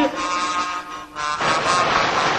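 Soundtrack music with held notes fades about a second in. A steady rushing noise of motor traffic follows, as on a city street.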